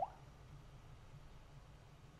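Quiet room tone with a faint low hum, opened by one brief rising tone.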